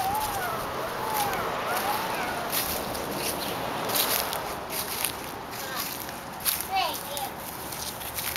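Young children's wordless high calls and babble, a few gliding vocal sounds near the start and again near the end, over a light crackle of footsteps on dry leaves and grass.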